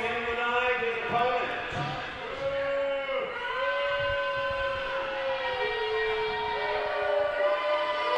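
Crowd booing: long drawn-out boos from several voices, each held a second or two and sliding up and down in pitch.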